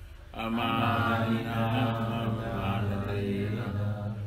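Devotional chanting: a voice sings a Vaishnava prayer or mantra in long held, melodic phrases, with a short pause just after the start.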